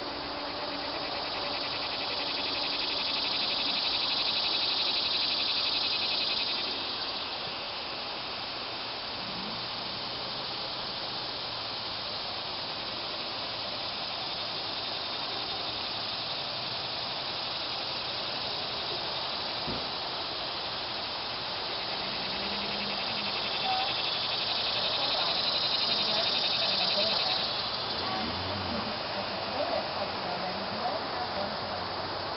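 Insects buzzing: a high, pulsing buzz swells and fades twice, for a few seconds each time, about two seconds in and again near the end, over a steady outdoor background.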